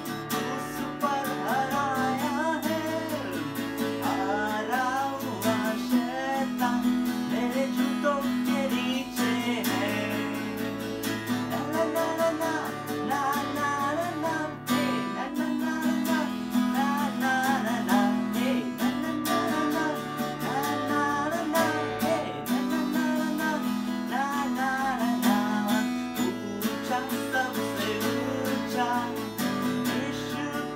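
Acoustic guitar strummed in steady chords under a voice singing a Hindi Christian children's action song, with a short break about halfway through.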